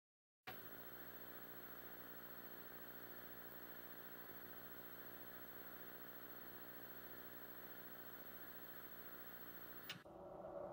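Faint, steady electrical hum with a thin high-pitched whine above it, starting suddenly about half a second in and cutting off with a click near the end.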